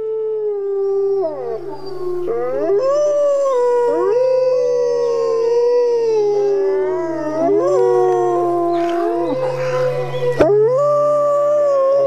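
Several wolves howling together: long, overlapping howls that glide up and down in pitch, over a steady low hum.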